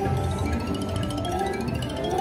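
Dragon Link video slot machine playing its electronic reel-spin music, a quick run of chime notes climbing steadily in pitch: the anticipation build-up while the last reel spins toward a possible second dragon and a free-games trigger.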